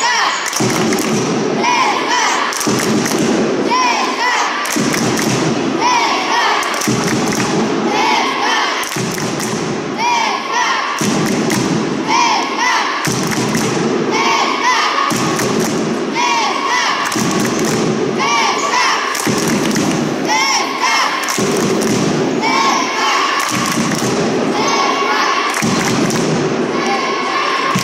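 Supporters in an indoor sports hall beating a drum in a steady rhythm, with voices chanting in time, echoing in the hall.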